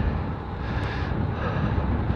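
Steady wind rushing over the microphone of a camera riding on a moving road bike, mixed with low rolling road noise.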